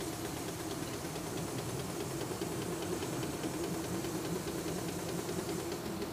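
Air-powered vacuum pump of a BG CT4 coolant exchange machine running steadily with a hum and hiss, drawing coolant out of a radiator through its service hose.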